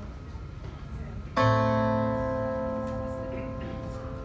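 A single guitar chord struck about a second and a half in, then left to ring out and slowly fade: the opening chord of a song.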